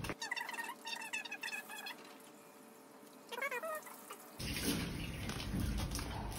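A few faint high-pitched squeaks, then about four seconds in a scrub-sink tap starts running water onto hands.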